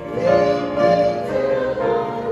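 A hymn played on an upright piano, with a group of voices singing along.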